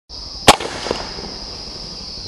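A single shot from a CZ 75 CO2 blowback BB pistol, one sharp pop about half a second in, followed a moment later by a fainter knock as the BB strikes an aluminium drink can. A steady high-pitched whine runs underneath.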